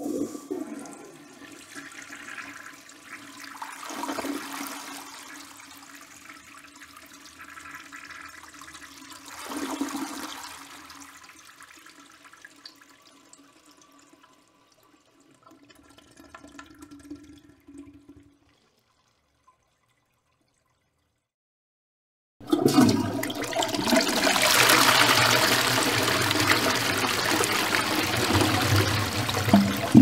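A toilet flushing: the water rush swells twice over a steady low hum, then dies away about eighteen seconds in. After a few seconds of silence, a second, louder toilet flush starts suddenly with a full rush of water.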